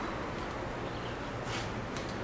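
Steady low background hiss with no distinct sound event.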